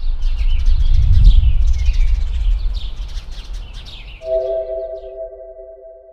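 Birds chirping over a loud low rumble, both fading; about four seconds in, a steady held musical chord comes in, part of an animated intro's sound bed.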